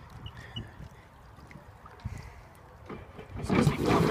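Sea-Doo personal watercraft's engine running low and quiet, then revving up sharply near the end as its jet pump throws water out behind.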